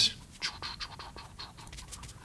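A paintbrush scratching through paint in quick, irregular small strokes, taking up more colour.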